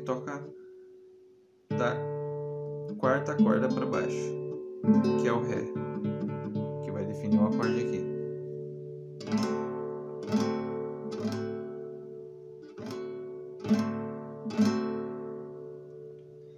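Acoustic guitar strumming open D-position chords: D major, D add9 and D7. There are about ten separate strums, each left to ring out, the first coming about two seconds in after a short quiet.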